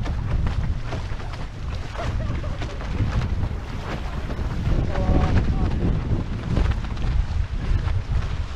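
Wind buffeting the microphone of a camera mounted on a fast-sailing catamaran, a heavy rumble mixed with water rushing and spraying off the hulls. A short pitched sound cuts through about five seconds in.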